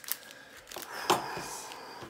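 Foil trading-card packs crinkling and rustling as they are picked up and handled, in an irregular run of crackles with a sharper crackle about a second in.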